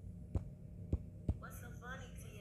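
Low steady electrical hum with three short soft taps within about a second. A brief snatch of voice comes in near the end.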